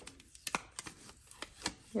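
Cardstock and a thin metal cutting die being handled as the tape and die are peeled off a freshly die-cut piece of cardstock: faint rustling with a handful of sharp, irregular clicks.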